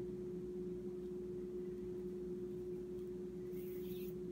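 Quiet room tone with a steady low hum and a faint brief rustle near the end.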